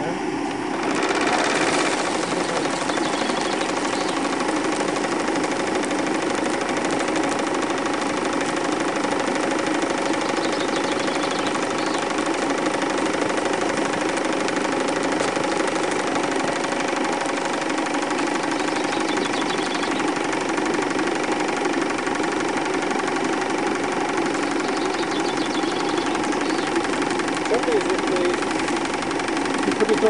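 Stuart Score model steam engine running under steam: a steady rushing hiss with a faint held tone that sets in about a second in and stays even throughout.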